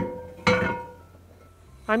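Two light clinks of kitchenware, one at the start and one about half a second later, each with a short ringing tail; then low room tone.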